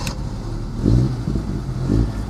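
Audi Urquattro's turbocharged five-cylinder WR engine being started: cranked on the starter and firing up, heard from inside the cabin.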